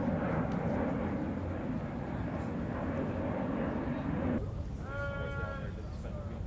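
A steady murmur of voices in the open air that drops away about four seconds in. It is followed by a single held, pitched call lasting under a second.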